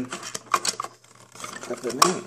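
Small hard-plastic clicks and rattles of a toy wheelie bin being pushed and clipped onto a toy refuse truck's bin lifter, with a brief low murmur of a voice near the end.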